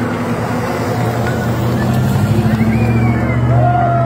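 Engine of a large SUV driving slowly past close by, a steady low drone that grows louder over the second half, with onlookers' voices calling out over it.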